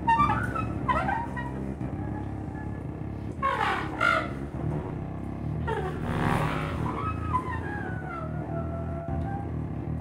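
Free-improvised duo of bowed cello and contrabass clarinet: a sustained low drone under high, sliding squeals and sweeping runs that swell twice, about a third of the way in and again past the middle.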